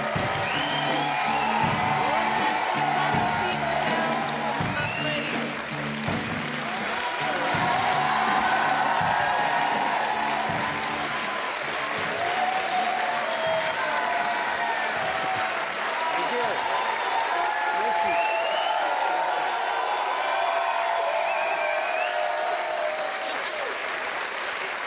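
Studio audience applauding and cheering, with a few whoops. Music plays under the applause for the first half and then stops.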